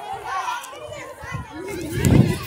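Several young people's voices chattering and calling out at once, indistinct, with no single clear phrase.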